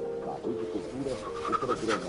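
A man's soft, wordless moaning, rising and falling in pitch, over quiet background music with long held notes.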